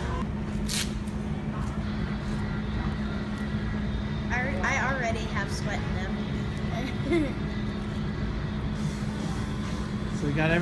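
Steady low rumble and hum of a large store's background noise, with a sharp click about a second in and a short voice about halfway through.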